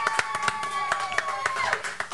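A small studio audience clapping in irregular, overlapping claps, with one voice holding a long call over the applause that breaks off shortly before the end.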